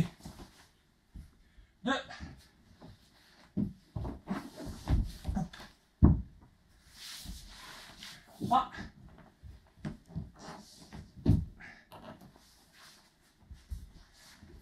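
A person in a judogi rolling from shoulder to shoulder on a wooden floor: dull thuds of the body landing on the boards, the loudest about six seconds in and another near eleven seconds, with rustling of the jacket and short voiced exhalations of effort.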